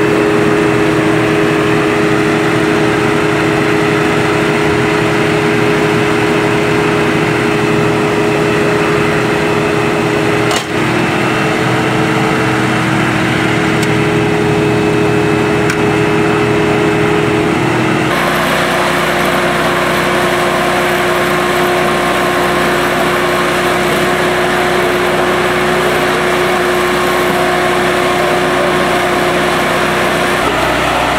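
A loud, steady engine-driven drone of fire apparatus running, with a constant hum. The sound changes abruptly a little past halfway through and runs on steadily.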